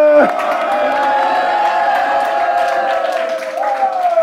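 A congregation calling out a long, drawn-out "Amen" together, several voices held for a few seconds and trailing off near the end.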